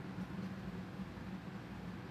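Quiet room tone: a steady low hum under a faint even hiss, with no distinct events.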